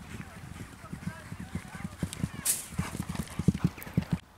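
A ridden racehorse passing at speed over turf, its hoofbeats thudding several times a second. The beats grow louder towards the end.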